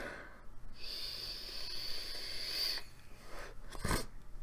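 A person breathing close to a microphone: a long breath with a thin, steady high hiss, after a few small clicks, and a sharp thump near the end.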